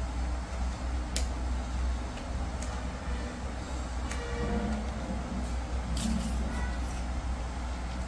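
Steady low hum of room noise with a few faint clicks from the plastic tube of a pencil-vanishing trick as it is pressed and handled.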